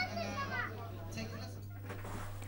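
Indistinct background voices and chatter from a room full of people, over a steady low electrical hum.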